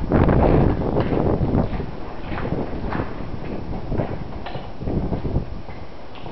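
Footsteps on a concrete floor, irregular steps roughly one to two a second, with heavy rumble on the microphone during the first second.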